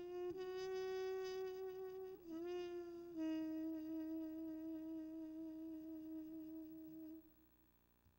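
Solo saxophone holding two long notes, the second lower and with vibrato, then falling silent about seven seconds in.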